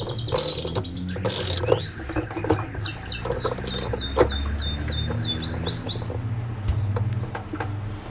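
A bird singing a quick run of high, downward-sliding whistled notes, about four a second, which stops about six seconds in. Under it come scattered clicks from a socket ratchet wrench tightening the tub nut.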